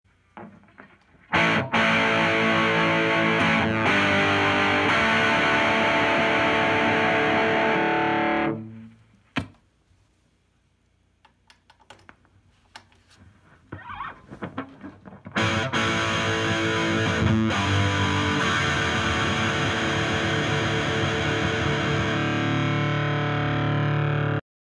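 Electric guitar played through overdriven tube amps: ringing distorted chords for about seven seconds, then a pause of several seconds with small clicks and pops as the guitar cable is swapped at the amp's input jack, then more distorted chords through the Marshall DSL20 on its half-gain setting.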